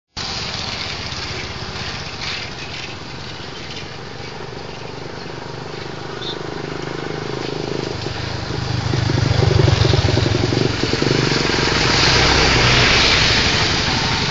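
Outdoor traffic noise with a haze of wind on the microphone; about eight seconds in, a motor vehicle's engine comes up close and runs loudly with a low hum.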